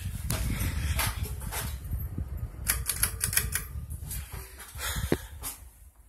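Low rumble of air from a spinning ceiling fan buffeting the microphone held close beneath it. Irregular clicks and knocks run through it, thickest about halfway through.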